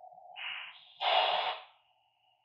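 Lab599 Discovery TX-500 receiver static on the 80-metre band: a narrow band of hiss through the 300 Hz CW filter, which opens into a full-width hiss about a second in as the radio goes to lower sideband with a 3 kHz filter. The hiss then cuts off abruptly.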